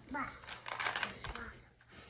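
A toddler's brief high-pitched babbling vocalisation just after the start, followed by soft handling and rustling noises with a faint low knock.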